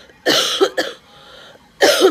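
A person coughing: two loud bouts of coughing about a second and a half apart, close to the microphone.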